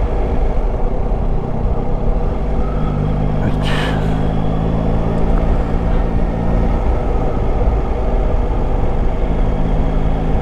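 Yamaha Tracer 9 GT's three-cylinder engine running at a steady road pace under wind rumble on the camera, with a short burst of hiss about three and a half seconds in.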